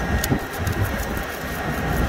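A couple of light metal clicks as the pin is worked back into the steel shim stack of an air drill opener's quick depth adjust. Underneath is a steady low rumble.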